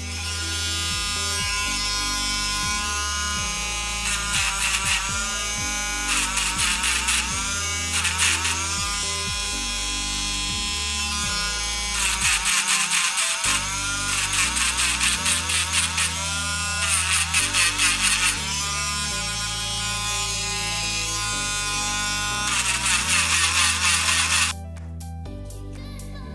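Dremel Stylo rotary tool whining as its small drum attachment grinds the surface of a small piece of raw Baltic amber, its pitch dipping and recovering several times. It stops suddenly near the end. Background music with a steady beat runs underneath.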